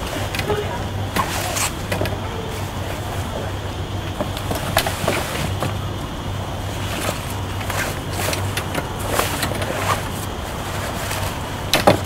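Bimini top fabric rustling and crinkling in short, irregular bursts as its sleeve is slid along the frame bow, over a steady low hum.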